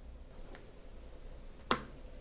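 A small rocker switch on the base of a homemade turntable stand clicks once, sharply, near the end as a finger presses it to switch the stand on. A much fainter tick comes about half a second in, over a low steady hum.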